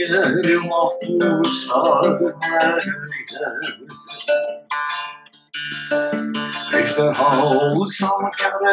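A man singing in Turkish to his own acoustic guitar, the voice wavering with vibrato on held notes. There is a brief break a little past halfway, then the singing and playing resume.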